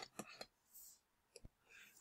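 Near silence with a few faint short clicks, the last about one and a half seconds in.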